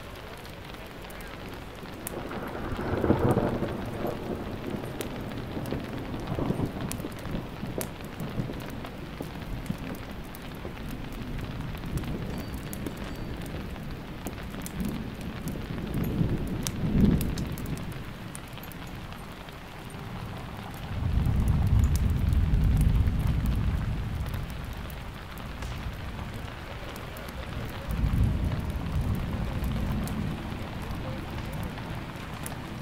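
Steady rain with rolling thunder. Rumbles swell about three seconds in and again around sixteen seconds; a longer, deeper roll starts about twenty-one seconds in, and another comes near the end.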